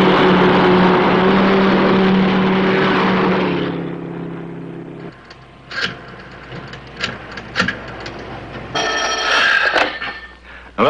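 A car drives past with a steady engine tone that drops in pitch as it goes by, about three and a half seconds in, then fades away. A few sharp clicks of a desk telephone being handled and dialed follow, and a telephone bell rings briefly near the end.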